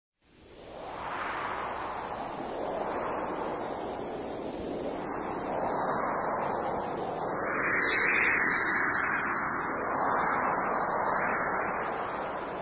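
Whooshing, surf-like noise with no clear pitch, fading in from silence and then swelling and ebbing every couple of seconds, like waves or wind: an ambient sound effect opening the music.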